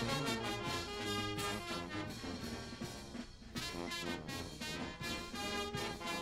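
Outdoor brass band playing, horns and sousaphones over drums, with a brief lull a little past three seconds in.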